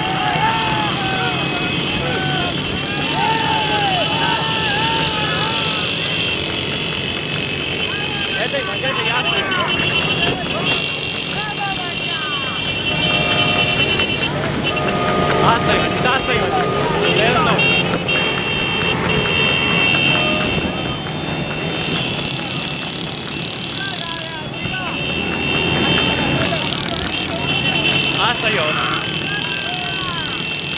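Motorcycle engines running close alongside a galloping horse-drawn racing cart. Horns sound in long stretches several times, and men call out over the engines with repeated rising-and-falling shouts.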